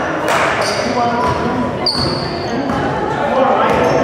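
Basketball game in a gym: voices of players and spectators echoing in the hall, with a ball bouncing on the hardwood floor and a brief high-pitched squeal about two seconds in.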